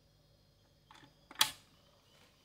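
Mechanical clicks from the control lever and mechanism of a record changer: a faint click about a second in, then a sharp, louder click half a second later.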